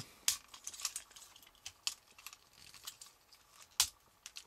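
Plastic and die-cast parts of a Blue Raker transforming robot toy clicking and rattling as they are handled and fitted together by hand. Two sharp clicks stand out, one about a third of a second in and a louder one near the end, among lighter taps.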